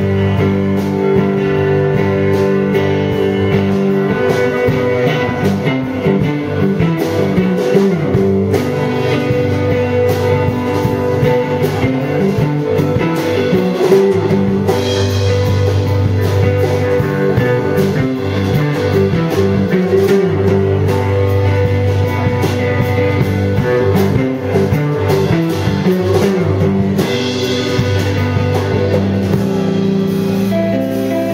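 A live rock band playing an instrumental passage with no singing: electric guitar over bass guitar, with a drum kit beating a steady rhythm.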